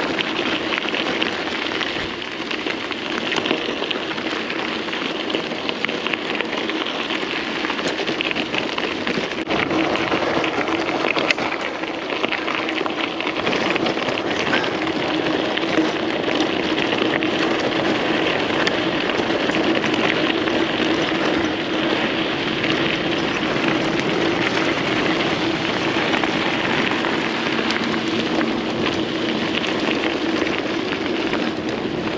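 Mountain bike tyres rolling fast over a loose gravel road: a continuous crunching, crackling rattle of stones, with a steady low hum running underneath.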